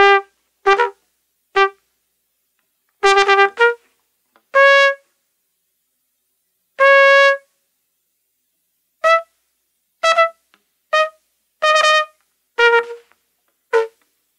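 Solo trumpet playing short, separate notes with silent gaps between them, about a dozen in all. Two longer held notes come in the middle. The line climbs higher through the middle and comes back down near the end.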